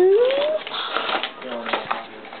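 Speech only: a young woman's voice, starting with a drawn-out call that rises in pitch, then a short spoken sound near the end.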